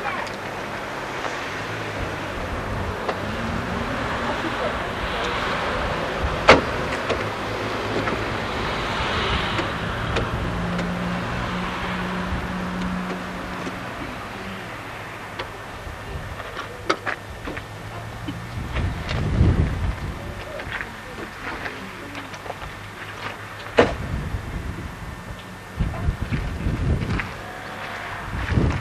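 Outdoor roadside ambience with a car passing along the road, swelling and then fading over about ten seconds. Later there are two sharp clicks and some short low rumbles.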